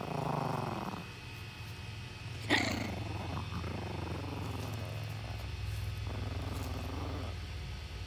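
Small chihuahua puppy growling in several stretches, with one short sharp yap about two and a half seconds in: resource guarding, warning another puppy off her toy.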